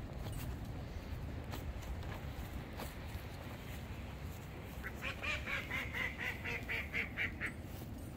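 A duck quacking: a rapid run of about a dozen quacks, roughly five a second, starting about halfway through and stopping a little before the end.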